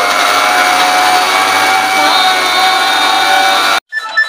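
Loud, steady rushing noise with a faint held tone running through it, cutting off abruptly near the end.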